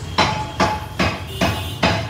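Butcher's cleaver chopping beef on a wooden stump block: five sharp chops at an even pace, about two and a half a second, each with a brief metallic ring from the blade.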